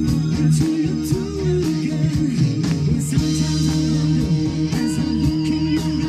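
A live rock band playing: electric guitar and bass over drums with regular cymbal hits, and a male lead singer on vocals.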